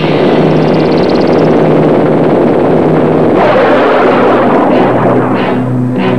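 Loud film-trailer soundtrack: music with steady low sustained tones under a dense wash of noise, with a sweeping effect coming in about three and a half seconds in.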